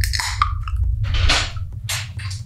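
An aluminium Red Bull can cracked open with a short sharp hiss, followed about a second later by another brief hiss or fizz, over a steady low muffled bass rumble of music.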